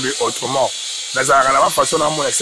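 A man talking into a handheld interview microphone, with a short pause in the middle, over a steady background hiss.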